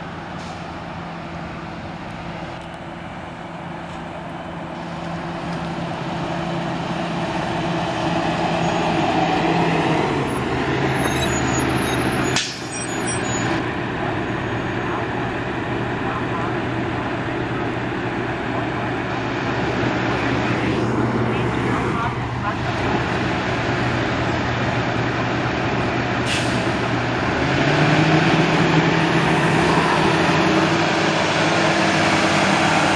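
Gillig Low Floor city bus with a Cummins ISL diesel drawing closer and idling, with a sharp air-brake hiss about halfway through. Near the end the engine note rises as the bus pulls away.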